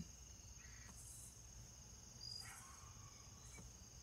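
Crickets chirring in a faint, steady high trill, with a couple of soft breathy puffs as a man draws on a tobacco pipe and blows out smoke.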